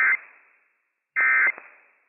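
Emergency Alert System end-of-message data bursts: short two-tone digital squawks, one right at the start and another about a second later, each trailing off in a brief echo. They mark the end of the Required Weekly Test broadcast.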